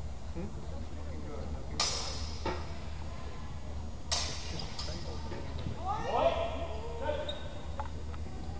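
Steel longswords clashing twice, each a sharp ringing strike, about two seconds apart. A raised voice calls out about six seconds in.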